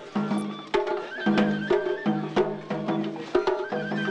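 Japanese festival music (matsuri-bayashi): sharp drum strikes several times a second under a high held melody line that steps in pitch.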